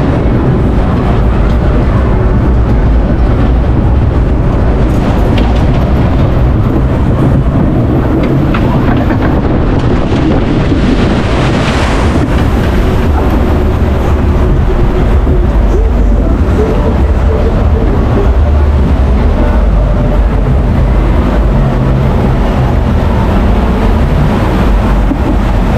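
Log-flume boat ploughing through its water channel, a rushing splash of spray swelling to its peak about eleven to twelve seconds in, then the boat running on through the water with a steady low rumble.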